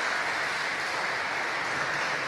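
Congregation applauding: steady, even clapping from many hands.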